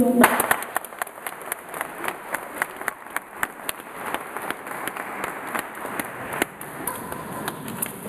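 Audience clapping: a burst of applause that thins out into scattered single claps.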